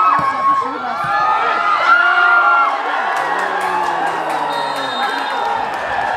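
Football crowd shouting and cheering at an attack on goal: many high held shouts and whoops overlapping in the first half, then a long lower yell around the middle, over steady crowd noise.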